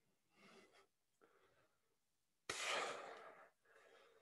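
A man breathing hard while exercising: two soft breaths, then a sudden, forceful exhale about two and a half seconds in, and a softer breath near the end.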